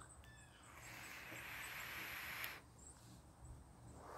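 Faint airy hiss of a long draw through a box-mod vape, lasting about two seconds and stopping with a light click just past the middle.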